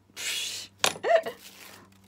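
A woman's short breathy laugh: a puff of exhaled breath, then a brief voiced chuckle about a second in. A low steady hum runs underneath.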